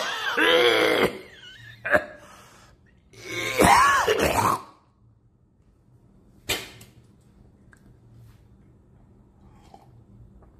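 A man's wordless, drawn-out vocal groans with wavering pitch, one at the start and another about three and a half seconds in, as he reacts to the burn of very spicy ramen. A single sharp knock follows about six and a half seconds in.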